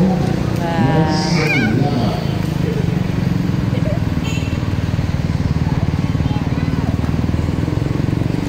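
Voices briefly at first, then a small engine running steadily at idle with a fast, even pulse, over street background.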